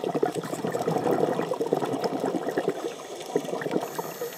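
A scuba diver exhaling underwater through a regulator: a dense bubbling of exhaust bubbles that lasts about three seconds and eases off near the end.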